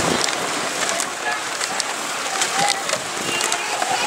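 Wheels of a pedal surrey bike rolling over wooden boardwalk planks: a steady rattling noise with scattered clicks.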